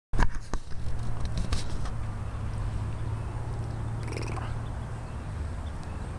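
A low, steady engine drone, with a few sharp clicks in the first couple of seconds and a brief higher-pitched sound about four seconds in.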